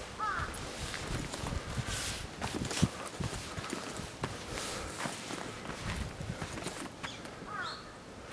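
Footsteps walking down a dirt trail scattered with leaves and small stones, in irregular crunching steps.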